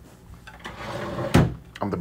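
A single sharp knock about one and a half seconds in, the loudest sound here, preceded by a faint low murmur; a man's voice starts speaking near the end.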